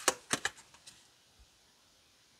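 A tarot card being drawn and handled: three sharp card snaps in the first half second, the first the loudest, then a couple of faint ticks.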